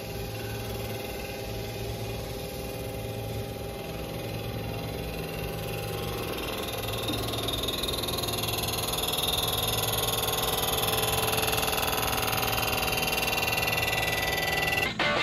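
Rottler F69A CNC block-machining centre running: a steady machine hum made of several tones. It grows gradually louder, with a brighter, higher whir coming up over the second half.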